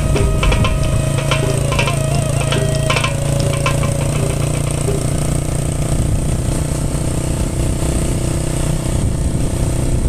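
Motorcycle engine running steadily while riding. Background music with plucked notes and percussion carries on for the first few seconds and then fades out.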